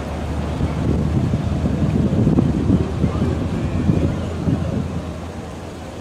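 Wind on the microphone over a steady low rumble, with indistinct voices in the background; it eases somewhat near the end.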